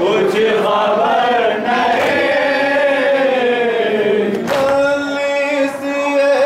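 A group of male mourners chanting a noha (Muharram lament) together, with a few sharp slaps of hands striking chests in matam. A new line starts and is held on one steady note about four and a half seconds in.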